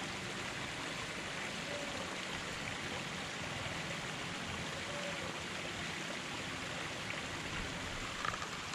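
Steady running water in a garden koi pond, an even, unbroken rush of water falling or trickling into the pond.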